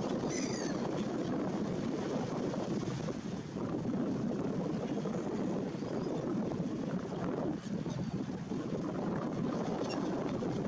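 Steady seaside wind noise on the microphone over the wash of the sea. A brief high bird call comes about half a second in, from the waterfowl and gulls gathered at the shore.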